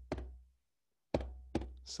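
Low drum struck in a heartbeat-like double beat: one stroke just after the start, then a pair about a second in, each stroke sharp and followed by a short low ringing.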